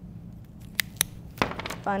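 A few light, sharp taps and clicks of craft materials being handled on a tabletop, as a roll of masking tape is set down.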